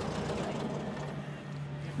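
Air-cooled 40-horsepower flat-four engine of a VW Beetle idling steadily.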